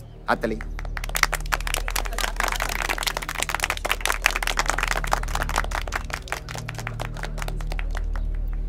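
A group of people clapping their hands, irregular and fast, starting about half a second in and thinning out near the end, over a low steady hum.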